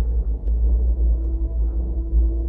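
Low, loud rumble with an uneven flutter, heard riding in a moving gondola cabin on its cable, with a faint steady hum joining about halfway through.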